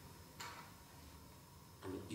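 Near silence in a pause between a man's spoken phrases: faint room tone with one soft click about half a second in, then his voice starting again just before the end.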